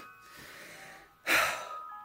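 A woman's sharp, audible breath in, about a second and a third in, lasting under half a second, over faint background music with held chime-like notes.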